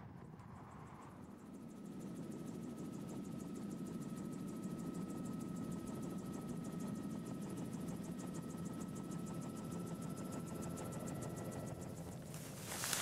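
Aircraft engine running steadily in flight, a low drone with a thin steady whine and a fast, even chopping pulse, building up over the first two seconds.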